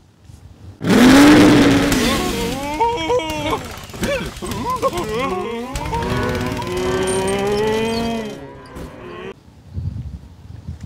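Soundtrack audio from an animated-film scene with cartoon tractors. Sound effects and music start suddenly about a second in, with sliding, pitched calls and tones, and cut off abruptly near the end.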